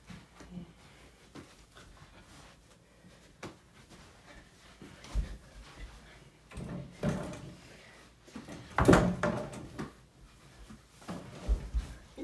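Thuds and knocks from a mini basketball game at an over-the-door hoop: the ball hitting the backboard and the wooden door, and bodies bumping against the door, scattered throughout. The loudest bang comes about nine seconds in.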